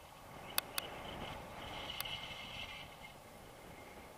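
Wind rushing over an action camera's microphone during a tandem paraglider flight, with three sharp clicks: two close together about half a second in and one about two seconds in.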